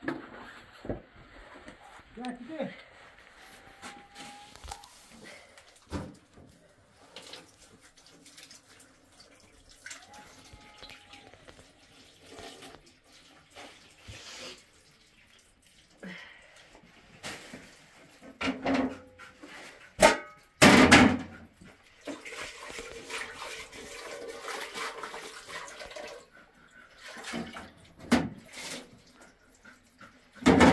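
Kitchen handling sounds: dishes and metal pots knocking and clinking, the loudest clatters about two-thirds of the way in, followed by a few seconds of tap water running into a metal sink.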